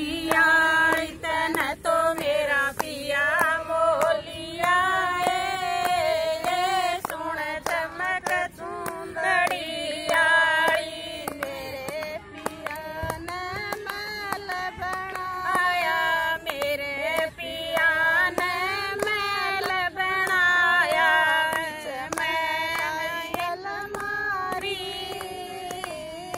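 A woman sings a Haryanvi folk devotional song (shabd) unaccompanied, with hand claps keeping time.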